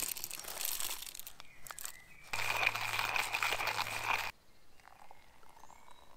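Hand coffee grinder being cranked, its burrs crunching coffee beans, loudest for about two seconds in the middle and quieter near the end.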